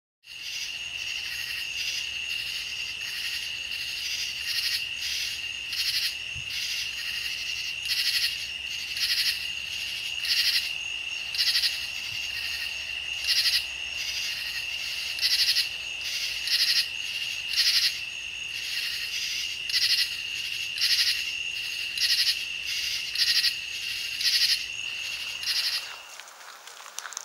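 Night chorus of calling insects: a steady, high-pitched trill throughout, with short trilled calls repeating about once a second over it. It cuts off suddenly at the end.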